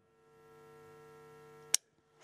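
Steady electrical hum on an open microphone line, cut off by a sharp click near the end as the line goes dead.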